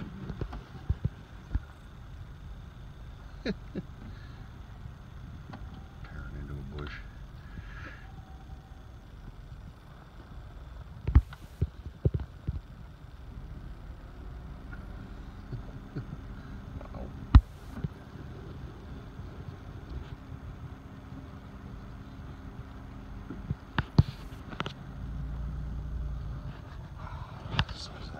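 A car idling in a steady low rumble, heard from inside the cabin, with several sharp knocks or clicks scattered through.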